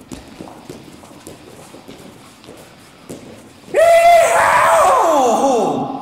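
A horse whinny, about two-thirds of the way in: a high, trembling call that falls steadily in pitch over about two seconds. Before it there are faint, scattered light knocks.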